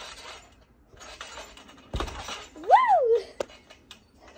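A trampoline mat takes a single thump about halfway through as a jumper lands, followed by a girl's loud rising-and-falling "Woo!" shout.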